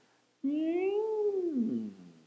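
A man's voice imitating the Doppler shift of a passing train: one sustained vocal note, starting about half a second in, that rises a little in pitch and then falls steeply, the pitch going up as the train approaches and down as it moves away.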